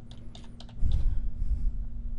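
Computer keyboard keys being typed, a few separate key clicks as a program name is entered into a search box.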